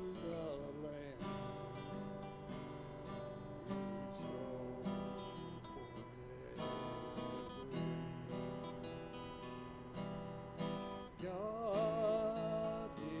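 Acoustic guitar strummed in an instrumental passage of a slow worship song, the chords changing every second or so. A man's singing voice comes in near the end.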